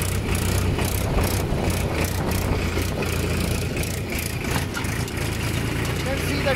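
Farm tractor's diesel engine running steadily as the tractor drives across the field.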